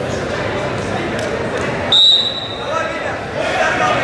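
A referee's whistle, one short shrill blast about halfway through, restarting the wrestling bout. Crowd murmur and voices fill the large hall around it.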